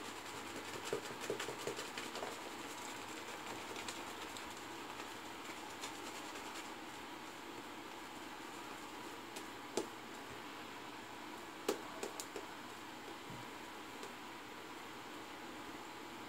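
Faint swishing and crackling of a synthetic shaving brush working soap lather on the face, with a few sharper clicks now and then.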